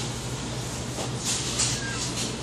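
Shop background noise: a steady low hum with a few brief rustles about halfway through.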